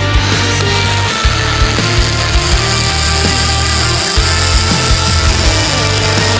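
Rock music with a steady beat, with the steady hiss of a MIG welding arc on aluminium starting just after the beginning.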